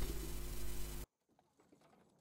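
A faint steady hum, the same background that lies under the narration, that cuts off about a second in to complete silence.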